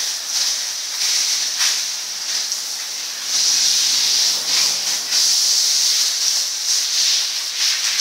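Water spraying from a garden hose over a wet dog and onto a concrete floor: a steady hiss that grows louder about three seconds in.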